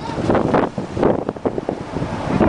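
Wind buffeting the microphone in uneven gusts, with the sea's wash underneath.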